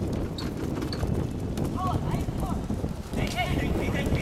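Futsal players' footsteps and ball touches on a rain-wet court, heard as scattered short clicks and knocks over a steady low rumble, with brief shouts from players about two seconds in and again just after three seconds.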